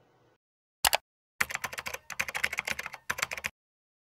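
Computer-keyboard typing sound effect over dead silence: a quick double click, then about two seconds of rapid key clicks in three short runs.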